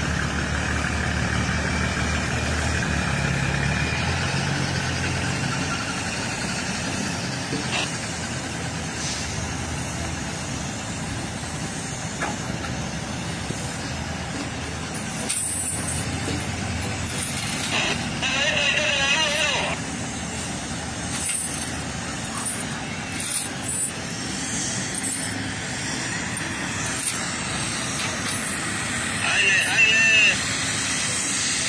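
Diesel engine of a loaded sugarcane truck running at low speed as it creeps onto the unloading platform, over a steady din of sugar-mill machinery.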